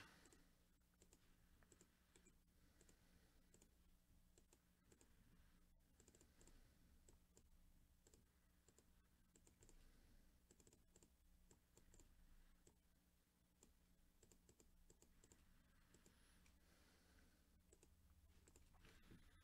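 Near silence with faint, irregular clicks of a computer mouse and keyboard over a faint steady hum.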